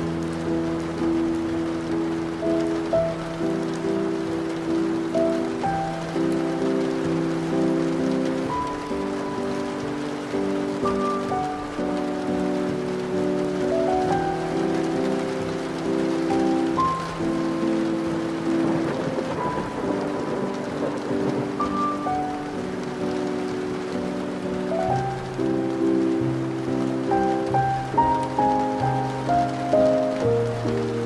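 Slow classical music of held chords and a gentle melody, laid over steady rain with thunder.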